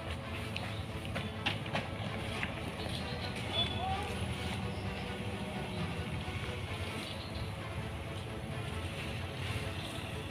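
A car's engine running low as it drives slowly up and comes to a stop, with quiet background music.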